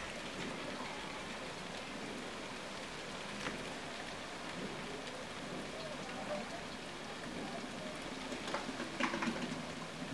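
Steady rain falling, an even patter with a few sharper drop ticks, several of them bunched together near the end.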